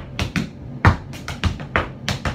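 Tap shoes striking a portable tap board in a quick run of sharp, uneven taps, about eight in two seconds: a tap step of a step, shuffle to the left, scuff and ball change.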